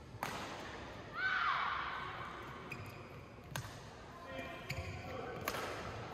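Badminton rally in an indoor hall: a few sharp racket hits on the shuttlecock, about two seconds apart, with faint voices in the background.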